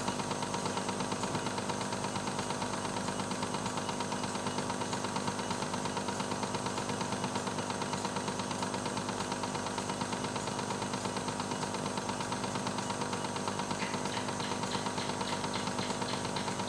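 Cassette deck running: the tape transport's small motor and mechanism give a steady whir with a fast, even flutter.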